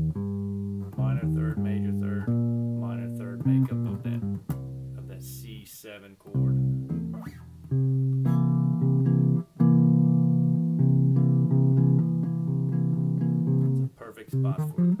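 Electric bass guitar played with the fingers, picking out the notes of the minor blues scale one after another. In the second half the notes are held longer and left to ring.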